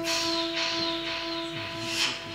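Trumpet holding one long steady note, with a hissing wash of noise that swells in at the start and fades toward the end.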